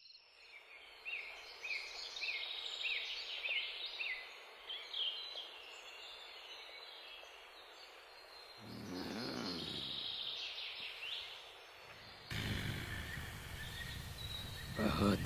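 Birds calling over a faint steady hiss: a run of short, repeated high chirps, about two a second, in the first five seconds. A low, wavering moan-like sound follows for about two seconds past the middle. Near the end a louder steady hiss comes in abruptly.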